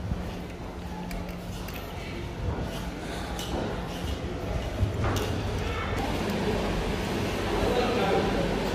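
Indistinct voices of a group of people walking, with footsteps on a tile floor. A low steady hum sets in about five seconds in.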